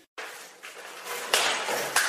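A person falling onto a tiled floor: faint scuffling, then a sudden louder clatter and scrape about a second and a half in.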